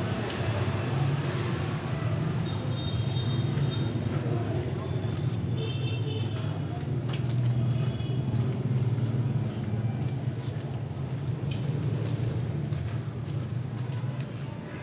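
Steady low rumble of distant city traffic heard from inside a narrow side alley, without any close vehicle passing.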